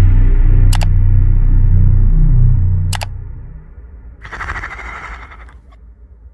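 End-screen sound effects: a deep, dark drone fading out over the first few seconds. Two sharp clicks come about a second in and about three seconds in, then a short hissing burst just after four seconds.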